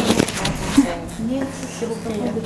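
A woman's voice saying a short word, with rustling and a brief knock of movement close by.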